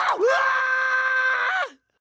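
A cartoon Smurf's long, high-pitched scream, held steady for over a second, then dropping in pitch and cutting off suddenly near the end.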